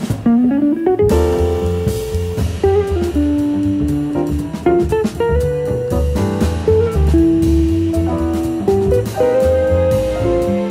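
Jazz band playing. A hollow-body electric guitar carries the melody, opening with a quick rising run of notes and then holding long notes, over acoustic bass and drums.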